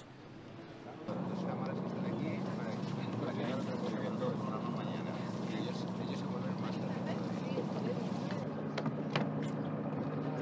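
Small fishing boat's engine idling with a steady low hum, starting about a second in.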